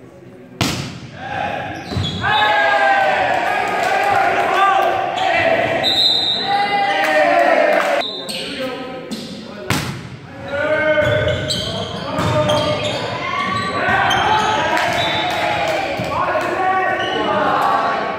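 Volleyball rally in an echoing gym: a sharp smack of the serve about half a second in and another hard hit of the ball near the middle, with voices shouting and cheering through most of it.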